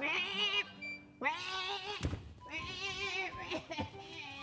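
Imitated baby crying, voiced by an adult: three high, wavering wails, each under a second, with short breaks between them. Background music runs underneath.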